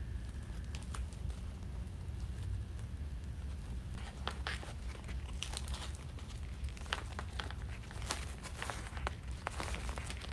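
Ribbon crinkling and rustling as hands fluff and shape the loops of a bow, in scattered short crackles that get busier after about four seconds, over a low steady hum.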